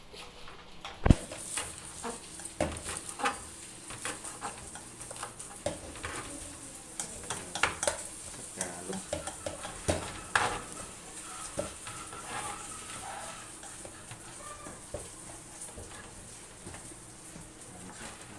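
Kitchen knife chopping scallions on a plastic cutting board, with irregular sharp knocks, mixed with a spoon scraping and stirring in a stainless steel bowl. A steady faint high hiss runs underneath from about a second in.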